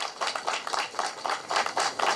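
Crowd applauding: many quick, overlapping hand claps in an irregular patter.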